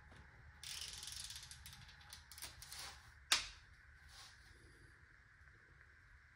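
Ratchet head of a 1/2-inch electronic torque wrench clicking quietly and rapidly as it is swung back, then a few lighter clicks and a single sharp metallic clack about three seconds in.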